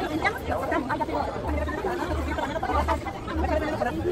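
Chatter of many voices among a crowd of shoppers and vendors in a busy open-air market, no single voice standing out.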